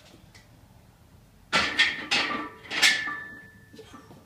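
Lifter straining through a heavy 275 lb front squat: a sudden cluster of four loud, harsh exhalations and grunts in quick succession over about a second and a half, starting about halfway in, with a brief ringing tone after the last one.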